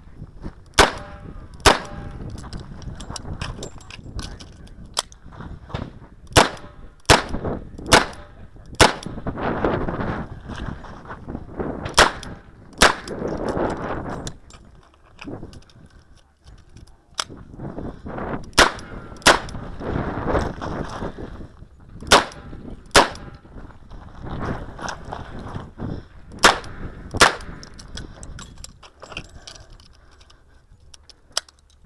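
Smith & Wesson Model 625-JM revolver firing .45 ACP, shots mostly in pairs just under a second apart, with pauses of several seconds between pairs. Wind buffets the microphone between shots.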